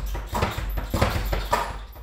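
Leather speed bag being punched in a single-punch drill, the bag drumming against the wooden rebound board in a fast, steady rhythm of knocks. The drumming dies away near the end.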